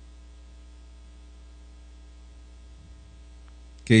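Steady low electrical hum with faint steady higher tones above it, unchanging throughout. A man's voice starts again just before the end.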